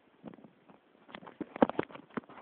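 Dry leaves and twigs crackling in a run of sharp snaps, growing denser and loudest about one and a half seconds in.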